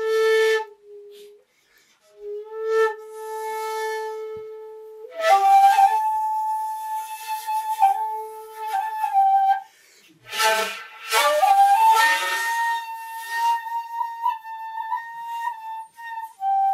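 Solo shakuhachi, the end-blown bamboo flute, playing a honkyoku: long held notes with breathy, airy attacks and short pauses for breath between phrases. The line moves from a low held note up into the higher register about five seconds in, and again after a pause near ten seconds.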